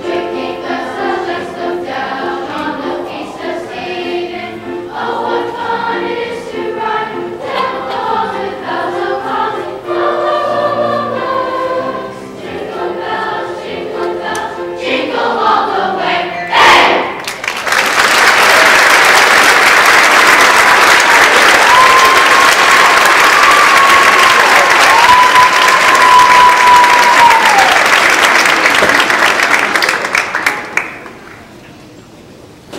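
School chorus singing the closing phrases of a song, ending about sixteen seconds in. Loud audience applause follows and runs on, with one long high-pitched call from the crowd riding over it near the middle.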